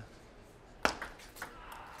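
Table tennis ball being hit by rackets and bouncing on the table in a rally: a sharp crack a little under a second in, then several lighter ticks.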